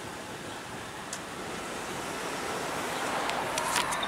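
Steady rushing noise of wind and road around a Chevrolet Suburban, growing slowly louder, with a few faint clicks near the end.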